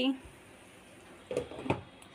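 Faint room hiss, then two short knocks close together about a second and a half in, as a hand handles a glass pot lid by its knob.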